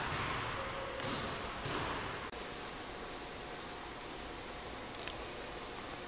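Faint footfalls of a sprinter running away across a gym floor, fading over the first two seconds, then a sudden drop into steady room hiss.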